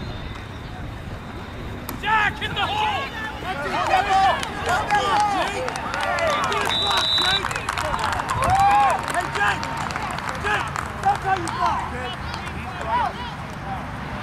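Spectators shouting and cheering, many overlapping high voices, breaking out about two seconds in and carrying on through a long run. A short, high whistle blast sounds near the middle.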